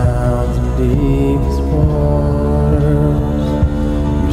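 Live worship music in a passage without lyrics: a steel-string acoustic guitar strummed over held chords and a steady low bass.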